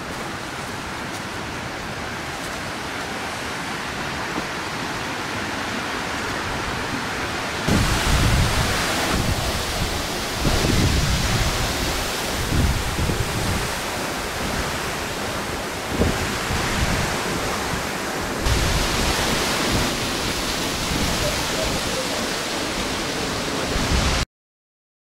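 Waterfall rushing: a steady roar of falling water, growing gradually louder over the first several seconds. From about 8 seconds in it is louder still, with irregular low gusts of wind buffeting the microphone.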